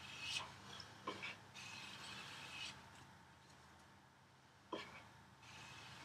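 Hand plane making a light test stroke along a board's edge, a soft hiss of the iron taking a very fine shaving after the blade has been advanced slightly. A few light knocks come before and after the stroke.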